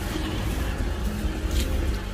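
Mercedes-Benz S500's V8 engine idling steadily, a low continuous rumble, while its cooling system is being bled with some air still in it.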